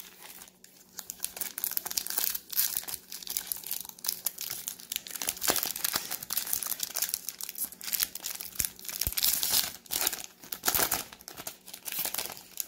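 Foil wrapper of a baseball card pack crinkling and crackling as it is torn open by hand and the cards are pulled out.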